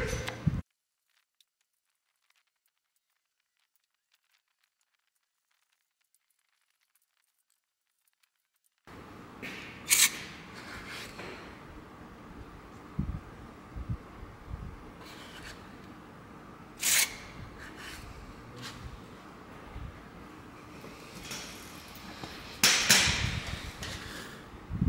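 A short laugh, then about eight seconds of dead silence, then quiet hand-tool work on a bare engine as holes in it are tapped, with a few sharp metallic clicks and knocks.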